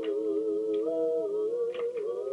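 Several voices singing a long held "ooh" in close harmony, a cappella, with vibrato. The upper voice steps up in pitch about a second in and comes back down shortly after.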